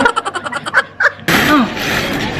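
A woman laughing in quick, breathy bursts, then a louder rush of breath-like noise a little past halfway.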